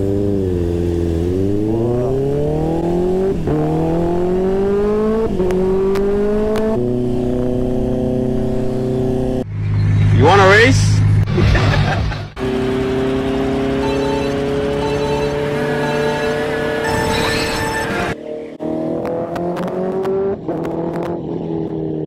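Honda CBR650R's inline-four engine accelerating through the gears while riding: its pitch climbs in three steps, dropping back at each upshift, then holds fairly steady at cruising speed. A louder, wavering sound rises over it about ten seconds in and lasts a couple of seconds.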